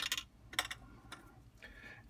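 Faint handling sounds of kraft cardstock on a cutting mat: a few light clicks and taps, then a soft rustle near the end.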